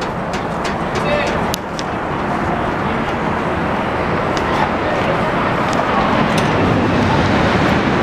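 Raging Bull roller coaster train rolling slowly on its steel track, a steady rumble that grows gradually louder, with a few sharp clicks.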